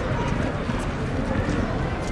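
Outdoor court ambience between handball rallies: indistinct voices over a steady low rumble, with a few faint light taps.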